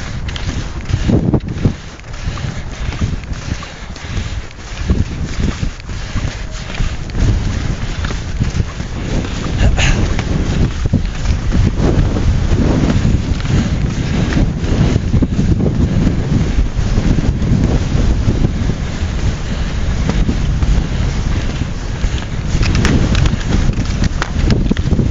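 Strong wind buffeting the microphone in gusts, building louder about a third of the way in.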